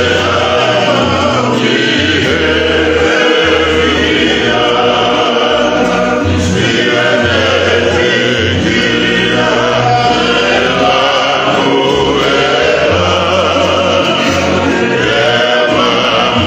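A group of men singing a Tongan kava-circle song in full harmony, with acoustic guitar accompaniment and a low bass line that steps from note to note.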